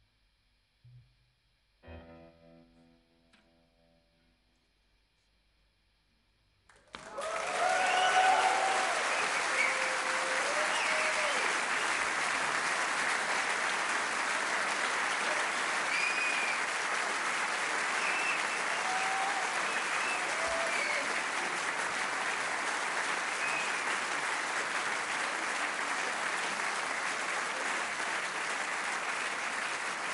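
A last soft electric-guitar chord rings and dies away into near silence, then about seven seconds in the audience bursts into applause with cheers and shouts, which carries on steadily.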